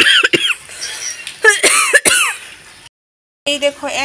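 Birds calling outdoors: a few short, arched calls at the start and another burst of them about one and a half to two seconds in. The sound then cuts off abruptly.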